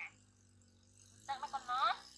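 Baby macaque crying in protest at its bath: after a quiet second, a quick run of high-pitched squeals that sweep up and down in pitch.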